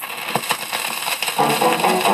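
A 78 rpm record on the Keen label playing on a turntable. The sound starts abruptly with record surface noise, hiss and clicks, and the band's instrumental intro notes come in about one and a half seconds in.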